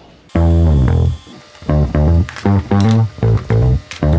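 Background music led by bass and guitar, starting suddenly a moment in and playing in short, punchy phrases with brief gaps.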